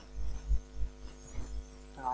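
Steady low electrical hum, with irregular low throbbing thumps underneath it.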